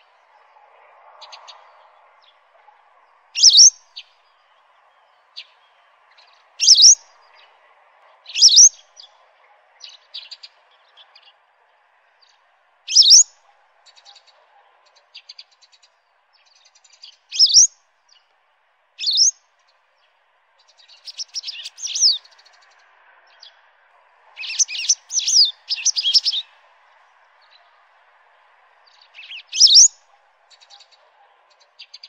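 Small bird's calls: single short, high, sharp chirps every few seconds, with a quick run of several together about three-quarters of the way through, over a faint steady background hiss.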